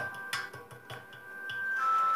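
Background music of held, steady notes, with light irregular clicks and scrapes of a steel spoon stirring flour through a metal mesh sieve.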